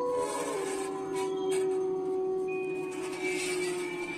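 Steady held tones, the main one low and lasting nearly the whole time. A higher tone joins about halfway through, and a few short noisy bursts fall near the middle.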